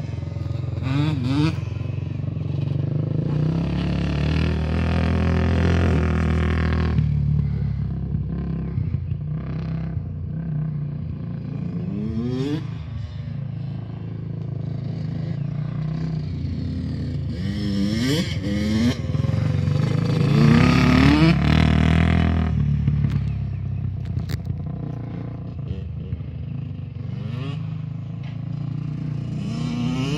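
A quad and a dirt bike lapping a flat track: their engines run steadily, with the revs climbing several times as they accelerate, loudest about two-thirds of the way through.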